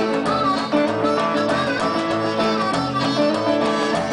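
Live acoustic blues: a harmonica plays held, bending notes over a strummed resonator guitar and a plucked upright bass keeping a steady beat.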